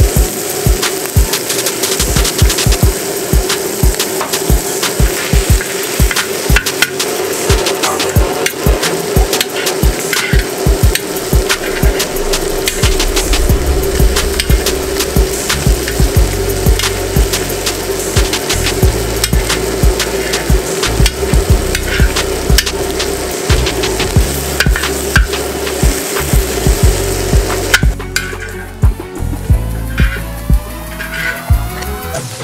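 Diced fish frying on a hot discada, its sizzle mixed with background music with a steady beat. The music changes abruptly shortly before the end.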